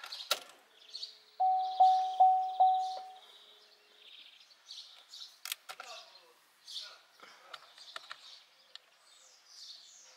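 Opel Astra K instrument-cluster warning chime: four quick bell-like tones about 0.4 s apart, sounding with a rear-access-open (tailgate) warning on the display. Light clicks follow, with faint bird chirps in the background.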